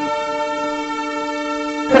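A single long, steady horn-like tone, held at one pitch with a rich set of overtones, cutting off abruptly just before the end.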